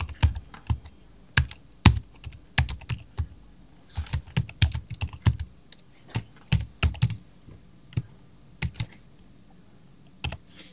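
Typing on a computer keyboard: irregular keystrokes in short runs with brief pauses, busiest around the middle.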